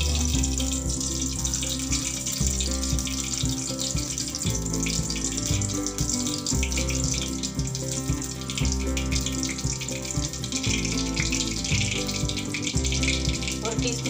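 Background music with a steady, stepped bass line, over the continuous bubbling of liquid boiling in an open pan.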